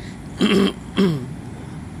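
A man coughs twice, harshly, about half a second apart, the second cough shorter.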